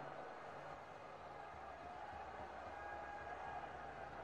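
Faint steady outdoor background noise with a low hum underneath, no distinct events.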